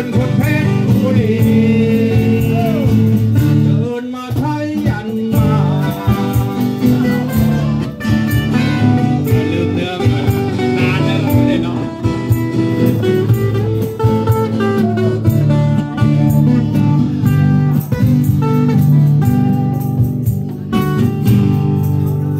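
A small live band playing: a man singing into a microphone over strummed acoustic guitar and bass guitar.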